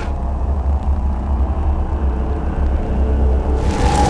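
A deep, steady low rumble from the soundtrack's underscore. Near the end, a brighter swell rises in, leading into music.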